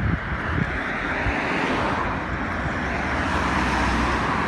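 Road traffic on a wide road: a steady rush of tyres and engines from cars going past, with a strong low rumble.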